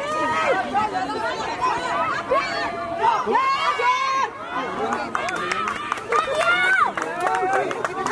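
Many voices of touchline spectators shouting and calling out at once, overlapping and rising and falling in pitch.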